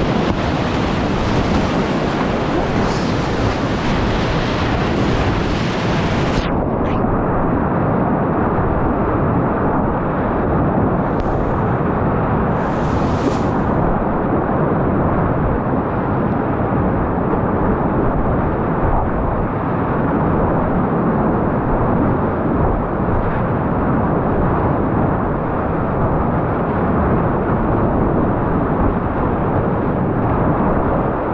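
Fast river whitewater rushing and splashing around a kayak, a loud steady rush of water close to the microphone. About six seconds in, the high hiss drops away sharply and the rush turns duller.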